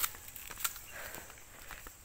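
Footsteps on a dry, stony forest path, with a few sharp crunches of dry leaves and twigs underfoot.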